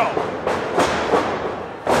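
Wrestling crowd noise with a few short thuds of wrestlers grappling on the ring. A sudden loud burst comes in just before the end.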